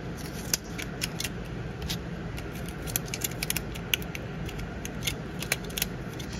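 A 35 mm film cassette and its leader being fitted into a compact film camera's film chamber: a run of small, irregular clicks and ticks of film and plastic being handled.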